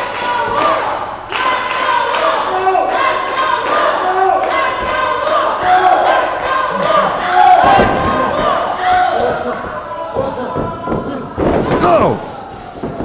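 Wrestling ring action: shouting voices, with some yells held for half a second or so, over several thuds from strikes and bodies landing on the ring mat. The sharpest thud comes near the end.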